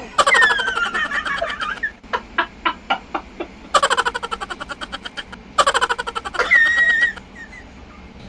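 A man and a woman laughing together in several bursts of rapid, breathy pulses, some of them high-pitched.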